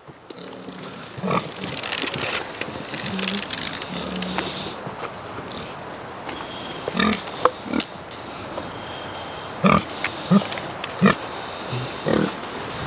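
A pig grunting briefly several times, mostly in the second half, over a steady rustling noise.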